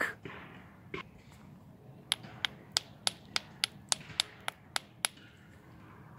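A small hammer tapping on a rock: one tap about a second in, then a quick run of about eleven sharp taps, roughly three a second, that stops about five seconds in.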